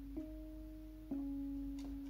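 Software electric piano sound played from a MIDI keyboard, sounding quiet single held notes. A new note starts just after the beginning and another about a second in, each ringing for about a second.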